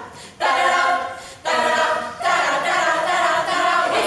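Women's a cappella choir singing in close harmony in short, rhythmic phrases, with brief breaks just after the start and about a second and a half in.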